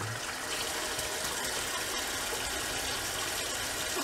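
Steady rush of water from a sink tap as a shaving brush is rinsed under it.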